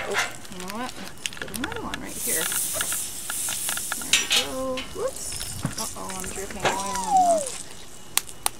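Oil sizzling on a Blackstone flat-top gas griddle, with a louder spell of hiss about two to four seconds in. Wordless voice sounds rise and fall over it.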